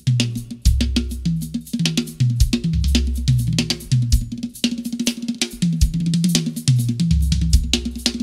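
Pearl Decade drum kit with Paiste cymbals played in a busy groove: kick, snare, hi-hat and cymbal strokes in quick succession. The drums run over low, sustained bass notes that step from pitch to pitch.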